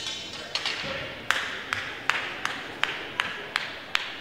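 Hand claps ringing in a large hall: eight sharp, evenly spaced claps, about three a second, starting about a second in. A short sharp clatter comes right at the start.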